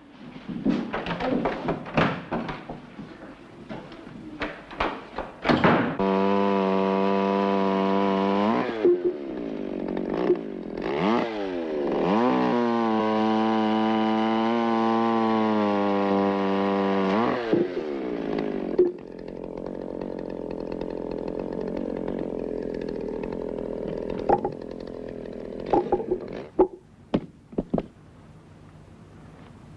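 Chainsaw cutting through a log. It starts suddenly after a few seconds of clicks and knocks, runs at a steady pitch, sags and picks up again partway through, and cuts off sharply. A lower steady hum and a few knocks follow.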